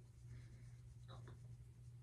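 Faint brushing of a makeup brush across the cheek while blending contour powder: two short soft strokes over a steady low hum.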